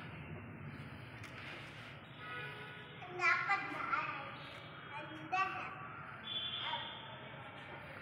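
Human voices heard as several short pitched calls, a second or so apart, over a steady low hum.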